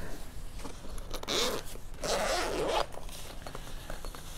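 Zipper of a soft tool case being pulled open, in two strokes: a short one about a second in and a longer one about two seconds in.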